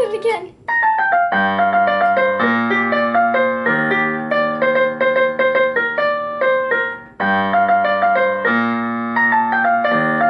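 Casio electronic keyboard playing a song intro: a fast run of notes over held bass notes. It breaks off briefly about seven seconds in and the phrase begins again.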